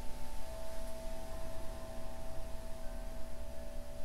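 Steady meditation drone of several sustained, bell-like tones held at an even level; a new, stronger tone comes in about half a second in.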